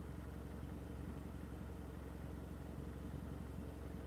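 Car engine idling steadily, a faint low hum.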